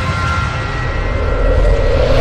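Logo-intro sound effect: a loud, deep rumbling whoosh that comes in suddenly and swells slightly, building toward the logo reveal.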